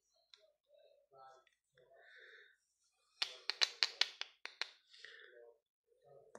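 Aero Peppermint aerated chocolate bar cracking as it is snapped apart by hand: a quick run of about eight sharp clicks starting about three seconds in and lasting about a second and a half.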